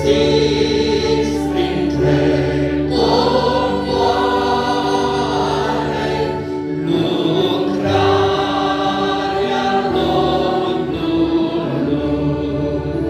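Mixed choir of men and women singing a hymn in Romanian phrases of about four seconds, over the steady held chords of accordions and an electronic keyboard.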